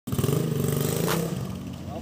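Raider underbone motorcycle converted to a 250 cc engine, running and pulling away; it is loudest in the first second and fades as the bike moves off.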